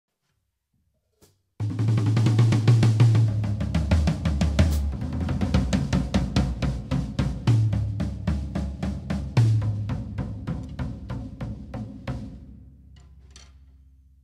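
Acoustic drum kit starting abruptly about one and a half seconds in: busy snare, bass drum, hi-hat and cymbal playing with tom fills. Sustained low synth bass notes run underneath and change pitch a few times. The drumming thins out and stops near the end, leaving a faint low tone.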